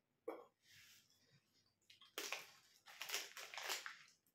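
Crunchy pork scratchings being chewed: a short crunch just after the start, then a run of crunching chews in the second half.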